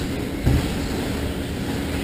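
Traxxas Slash electric RC short-course trucks racing on an indoor dirt track: a steady noise of motors and tyres in a large hall, with one low thump about half a second in.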